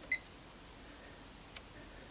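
Kill A Watt plug-in power meter giving one short, high electronic beep as its kilowatt-hour button is pressed, just after the start. A faint click follows about a second and a half in.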